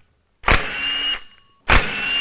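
Cordless power tool spinning bolts out of an LS engine's flex plate at the back of the crankshaft, in two short runs of under a second each with a sharp start and a brief whine.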